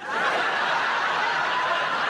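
Studio audience laughing, breaking out suddenly and holding at a steady level.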